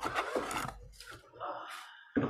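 Rubbing and scraping handling noise with a few short knocks, as cables and equipment on the workbench are moved and the camera is repositioned.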